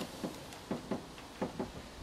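A few faint, light clicks and knocks, spread irregularly, from hands working a car headlight unit loose after its retaining nut has been undone.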